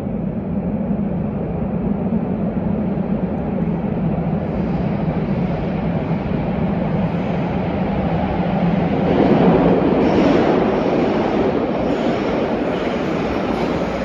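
A Nagoya subway 2000 series train approaching through the tunnel: a continuous rumble of wheels on rail that builds and is loudest about nine to ten seconds in.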